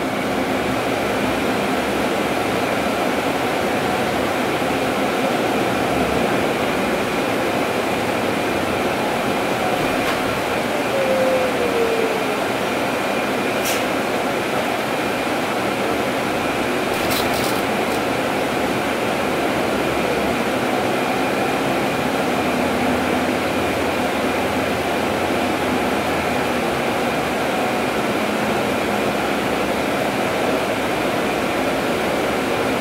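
Steady cabin noise inside a moving Proterra ZX5 battery-electric bus, with a faint high whine over the road noise. About a third of the way in, a tone glides down briefly, and a few sharp clicks come around the middle.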